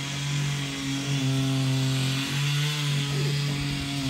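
Small engine of a motorised grass cutter running steadily, its pitch dipping briefly a few times.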